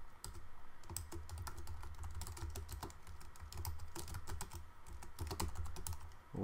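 Typing on a computer keyboard: a quick, irregular run of key clicks, over a steady low hum.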